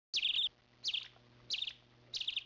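A bird chirping: four quick phrases about half a second apart, each a falling note followed by a short stutter of rapid notes. The sound cuts in and out abruptly.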